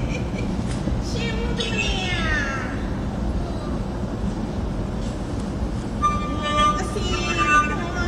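Chinese opera performance: a performer's stylized sung speech, its pitch swooping down in long glides, followed about six seconds in by a long held note.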